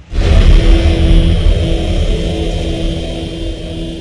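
Cinematic logo-intro sound effect: a deep rumble that starts abruptly with a steady hum over it, slowly fading.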